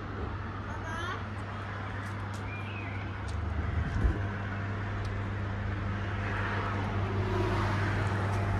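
Outdoor urban ambience: a steady low hum under an even background noise, with faint voices, a short high chirp about two and a half seconds in and a soft thump about four seconds in.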